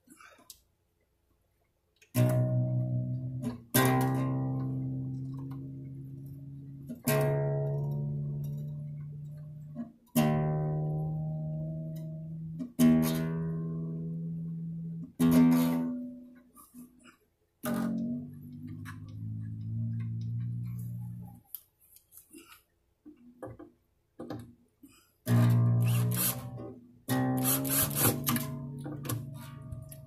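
Nylon strings of a classical guitar plucked one at a time and left to ring, while the pegs are turned to bring them up to pitch. The strings are newly installed and still stretching in. In one ringing note the pitch climbs in small steps as its peg is turned, and quicker plucks and strums come near the end.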